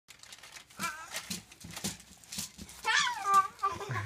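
A toddler's high-pitched squeals and babble, loudest and rising then falling in pitch near the end, over soft regular thumps of bouncing on a trampoline about twice a second.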